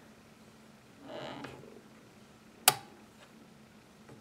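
A single sharp metallic click about two-thirds of the way through, as the long-range volley sight arm on the side of a Lee-Enfield rifle's action is swung up. A faint, brief rustle comes about a second before it.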